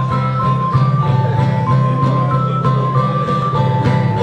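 Live band music: a keyboard plays a simple melody of held notes stepping up and down over strummed acoustic guitar chords, with regular light beats.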